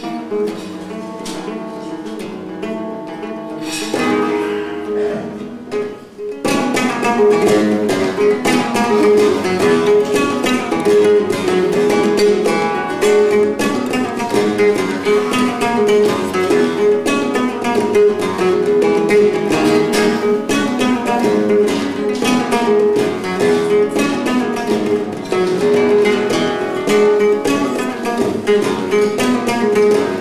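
Solo flamenco guitar. It opens with softer, sparser plucked notes, then about six seconds in breaks into a loud, fast, dense run of notes that carries on.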